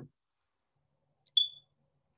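A single short, high-pitched electronic beep about a second and a half in, dying away quickly, against near silence.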